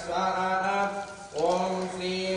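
Male Hindu priestly chanting of Sanskrit mantras for a Ganapathi homam, in long held notes. There is a short break for breath a little over a second in, then the chant resumes, rising into the next note.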